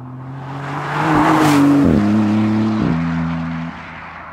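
Maserati MC20's twin-turbo V6 accelerating hard as the car drives past. It is loudest about a second in as it goes by. Two quick upshifts drop the engine note about two and three seconds in, and the sound fades as the car moves away.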